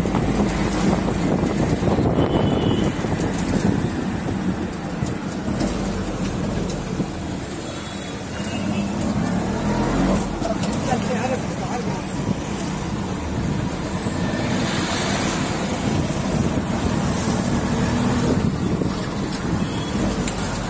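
Steady engine and road noise heard from on board a vehicle moving through town traffic.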